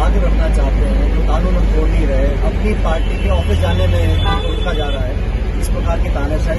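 A man talking inside a bus over the steady low rumble of the bus's engine.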